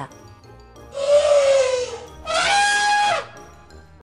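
Elephant trumpeting twice, brassy and rasping. The first call, about a second in, falls in pitch; the second, steadier call drops off at its end.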